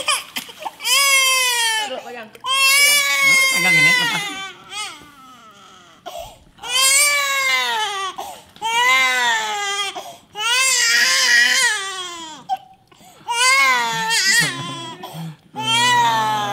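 Baby crying hard: a run of about six long, high wails, each a second or two long, with short breaths between them.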